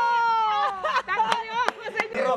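A woman's long, high-pitched squeal of delight that breaks into laughter about a second in, with a few sharp hits.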